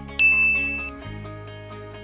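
A single bright ding sound effect, struck about a quarter second in and ringing for under a second, over soft background music.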